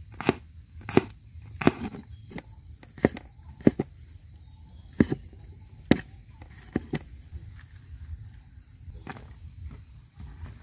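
A cleaver chopping through garlic cloves onto a wooden cutting board, sharp knocks about once a second, thinning out in the second half. A steady high insect drone runs underneath.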